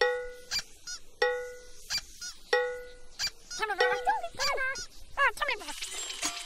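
Three short, even honks, each held about half a second and spaced about a second and a quarter apart. They are followed by a run of squeaky, warbling calls that bend up and down in pitch.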